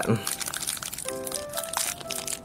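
Small plastic toy wrapper crinkling and tearing as it is pulled open by hand, with background music playing under it.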